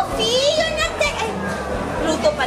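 Excited, high-pitched voices and squeals from several people over busy dining-room chatter.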